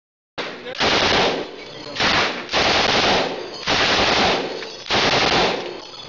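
Machine gun fired from a bipod, about five bursts of automatic fire, each under a second long, echoing in an indoor shooting range.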